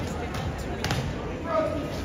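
Background voices of people talking, with one sharp knock a little under a second in.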